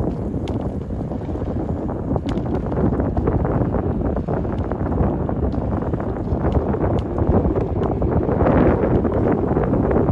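Wind buffeting the microphone: a loud, steady rumble that swells near the end.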